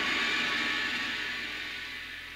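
A hissing wash of noise within a house music track, with no beat under it, fading slowly.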